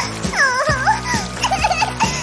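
A cartoon character's high-pitched wailing sobs, the voice sliding up and down, over background music.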